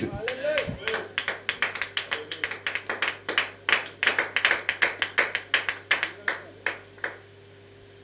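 Congregation clapping: a quick run of sharp, separate hand claps lasting about six seconds, which stops abruptly about seven seconds in and leaves a faint steady hum.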